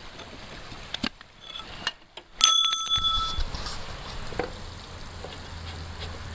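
A few light knocks, then about two and a half seconds in a sharp metal-on-metal clink that rings briefly, from work on a steel riding mower deck while a spindle pulley is being removed.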